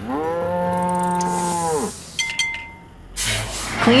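A cow mooing once, a single call just under two seconds long that rises at the start and drops away at the end. A couple of light clicks follow, then a whoosh near the end.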